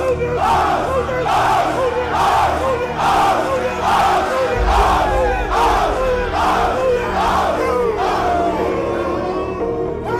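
A team of football players chanting and shouting "oh!" in unison, about one and a half shouts a second in a steady rhythm. Music with a deep bass comes in underneath about halfway through.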